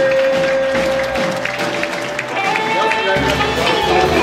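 Live church band music: a male singer holds one long note over drums and bass guitar, ending it about one and a half seconds in while the band plays on, and a low bass line comes in near the end.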